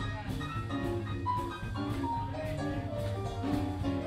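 Live blues band playing an instrumental passage: electric guitar and drum kit over a bass line, with a single melody line of held notes moving above the rhythm.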